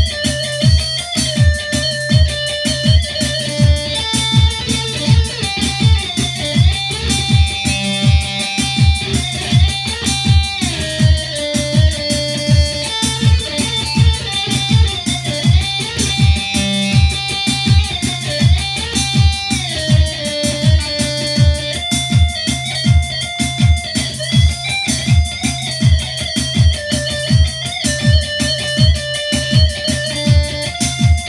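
Long-necked bağlama (saz) playing a plucked instrumental melody over a steady low beat of about two to three thumps a second.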